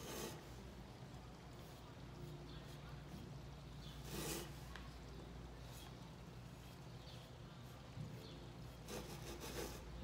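Faint soft strokes of a paintbrush on an unglazed ceramic bisque piece, over a steady low hum, with one brief louder noise about four seconds in.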